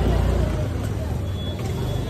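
Steady low engine rumble of a nearby motor vehicle over the general hubbub of a busy street.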